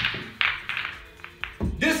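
Pool balls clacking as the cue ball travels the table and strikes other balls: a string of sharp clicks, then a dull thump near the end.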